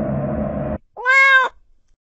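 A steady low droning hum cuts off suddenly, and after a brief silence a kitten meows once, a short half-second call that rises and falls in pitch and is louder than the drone.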